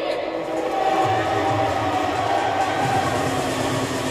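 Recorded backing track played over loudspeakers in a large gymnasium: sustained steady tones, with a low bass note coming in about a second in.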